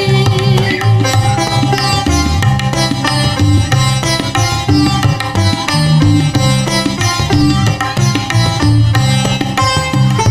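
Instrumental passage of live Indian music: a plucked, sitar-like melody line runs over a steady tabla rhythm, with harmonium and keyboard accompaniment.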